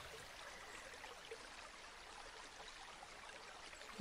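Near silence: a faint, steady hiss-like background with no distinct events.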